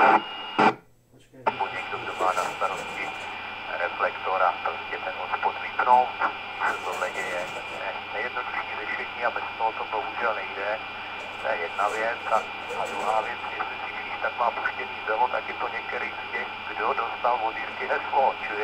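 Voices of CB operators coming over the speaker of a K-PO DX 5000 CB radio on FM: hissy, noisy speech with a faint steady tone underneath, cutting out briefly about a second in before the talk resumes.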